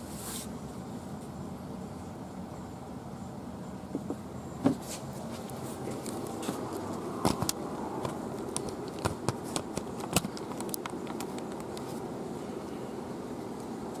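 Steady low background noise with a few scattered light clicks and knocks, the most distinct about a third of the way in.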